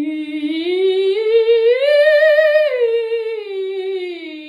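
A woman singing a vocal exercise on one sustained vowel with vibrato. She glides up about an octave to a held top note near the middle, then back down. Her tone is kept bright and forward with squillo (twang), giving the voice more presence and projection.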